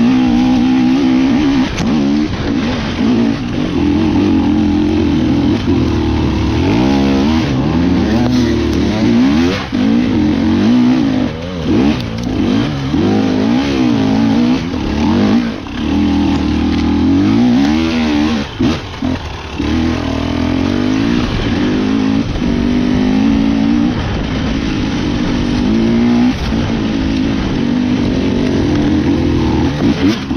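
Loud enduro dirt bike engine heard from onboard the bike, pulling under throttle. Through the middle stretch the revs rise and fall again and again in quick blips, and they run steadier at the start and near the end.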